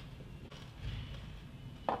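Quiet room with a soft low thump about a second in, then a woman's short "mm" of approval at the end.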